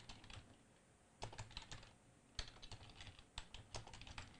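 Faint typing on a computer keyboard: a few keystrokes, a pause of about a second, then a steady run of keystrokes.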